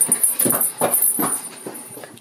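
Quick footsteps, about two and a half a second, with a high jingle of small bells over them, growing fainter near the end.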